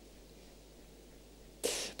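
Quiet room tone through a pause in a man's speech, then near the end a short, sharp breathy sound at close range on the microphone, like a quick intake of breath before speaking again.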